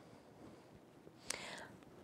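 Quiet room with one short, soft breathy hiss about a second and a half in.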